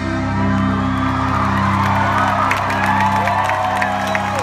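Live folk-rock band holding a steady chord as the song ends, with crowd whoops and cheers rising over it from about a second and a half in.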